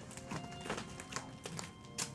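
Soft background music, with a few light taps and thumps of cats' paws landing and scampering on a wooden floor.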